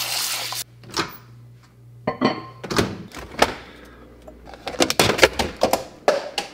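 Kitchen tap running into a bowl of oats, shut off sharply about half a second in, followed by scattered knocks and clunks of things being handled, with a quick cluster of them near the end.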